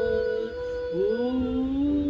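A man singing a long held "ooh", with a second, lower note sliding up and holding about a second in, overlapping the first as it fades.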